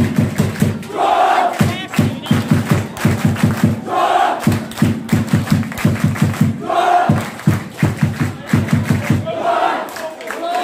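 Football supporters chanting in unison over a fast, steady beat of thumps, about four to five a second, with a loud group shout rising every three seconds or so.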